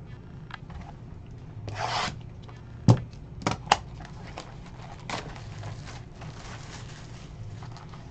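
Cardboard trading-card boxes handled and slid on a table mat. There is a short scraping rub about two seconds in, then a sharp knock a second later and two lighter clicks, followed by softer rubbing.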